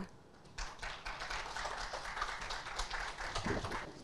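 Audience clapping, fairly faint. It starts about half a second in and dies down near the end.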